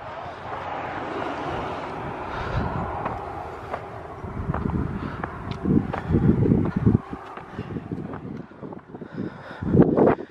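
Wind buffeting the microphone in irregular gusts, with low rumbling blasts heaviest in the middle of the stretch.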